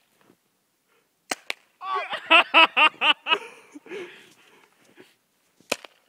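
Sharp pops of paintball markers firing: two quick ones a fraction of a second apart about a second in, and a single one near the end. Between them, a burst of a man's laughter.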